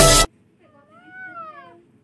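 Background music cuts off abruptly at the start. Then comes a single high, drawn-out meow-like vocal call from a young child, rising and then falling over about a second.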